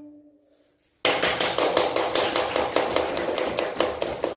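The last violin note dies away. About a second in, an audience starts applauding, and the applause cuts off abruptly near the end.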